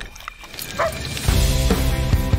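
A lion cub gives one short, high yip a little under a second in, then music with a steady beat comes in.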